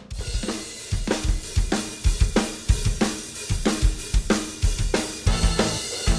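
Mapex drum kit played in a steady driving beat, with bass drum, snare, hi-hat and cymbals. The kit kicks in suddenly right at the start and plays along with the band's recorded song.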